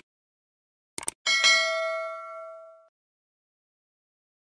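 Subscribe-button animation sound effect: two quick mouse clicks about a second in, then a bright bell ding that rings out and fades over about a second and a half.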